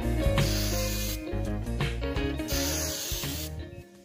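Aerosol spray-paint can hissing in two bursts of about a second each, over background guitar music.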